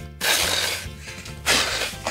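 A man imitating a snake with long breathy hisses, a second hiss starting about one and a half seconds in, over background music.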